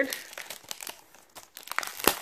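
Paper and plastic wrapping on a small gift box crinkling as it is handled, in scattered crackles with a couple of sharper clicks near the end.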